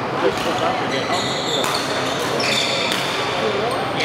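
Badminton rally on an indoor court: sharp knocks of rackets hitting the shuttlecock and high squeaks of shoes on the court floor, several times. Underneath is a steady hubbub of voices and play echoing around a large hall.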